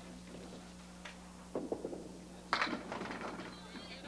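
A candlepin bowling ball hits the wooden pins about two and a half seconds in, with a brief clatter of pins, over a low steady electrical hum. Faint voices are heard just before it.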